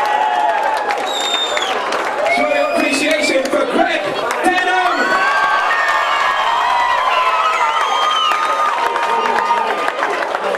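Crowd cheering and shouting, many voices at once, for the announced winner of a fight.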